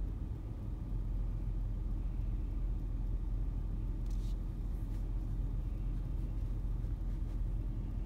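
Manual car's engine idling, heard from inside the cabin as a steady low rumble while the car is held on clutch and brake in first gear.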